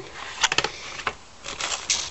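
Clear plastic packet of hay treats crinkling as it is handled, with a few sharp clicks about half a second in and a longer rustle near the end.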